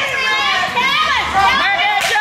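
Small live audience, children's voices among them, shouting and calling out over one another.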